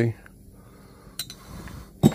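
Quiet workbench handling: one short, sharp click of a small tool or part about a second in, then a faint rustle of parts being moved near the end.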